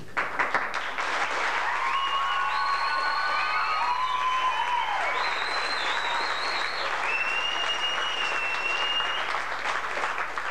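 An audience in a hall clapping and cheering, starting at once and holding steady, with several high, drawn-out whistles over the applause.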